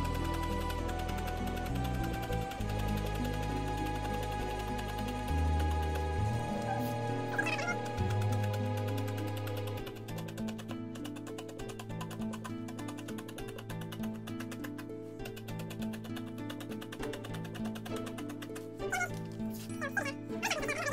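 Background music with held notes over a bass line; the bass drops out about ten seconds in and the music carries on more quietly.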